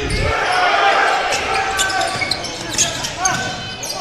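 Basketball game sound in a gym: a basketball bouncing on the hardwood court amid crowd voices, with short squeaks in the mix.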